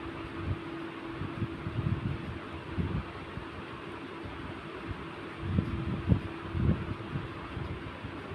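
A pen writing digits on a paper textbook page, with a few soft low knocks from the pen and hand against the book, over a steady background hum.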